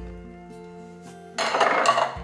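Soft background music with held notes, then about a second and a half in a short, loud clatter of a metal can and a plastic food container being handled on a counter as the last drained canned green beans go in.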